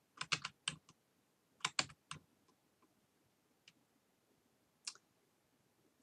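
Computer keyboard keys pressed in quick runs: about five clicks at the start, about four more a second and a half later, then two single clicks, one faint.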